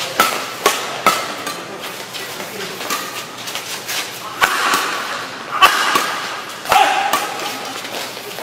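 Badminton rackets striking the shuttlecock in a fast doubles rally: sharp cracks, three in quick succession at the start, then more spaced about a second apart, the loudest coming in the second half.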